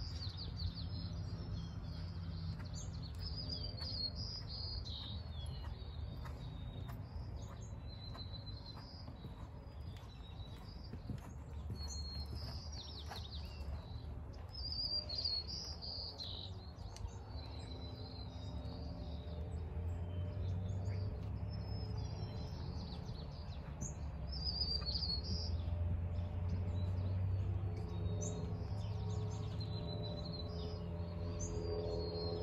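Small birds chirping and calling again and again over a steady low background rumble.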